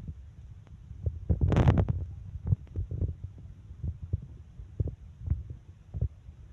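Irregular low thumps and rumble from wind and handling on a handheld microphone carried while walking, with a louder rushing burst about a second and a half in and scattered light clicks.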